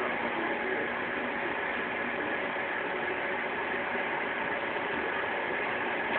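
Microwave oven running: a steady hum with fan noise.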